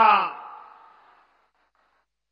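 The last word of a man's speech through a public-address system, fading out in its echo over about a second, then complete silence.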